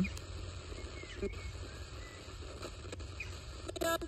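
Low hiss and static from a spirit-box radio sweeping between stations, with a few faint chirps. Just before the end a short voice-like fragment comes through the radio's speaker, the box's answer to the question.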